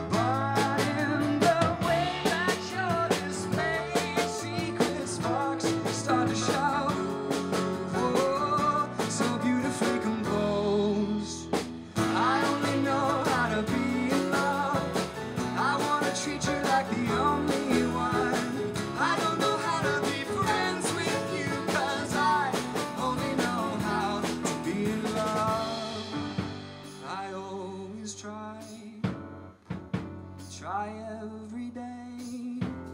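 Live band playing a song: a male lead voice sings, with a female backing voice, over strummed acoustic guitar, electric bass and grand piano. There is a brief break about twelve seconds in, and the band grows quieter over the last few seconds.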